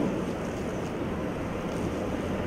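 Steady room tone of a conference hall: an even, unchanging hiss with nothing distinct in it.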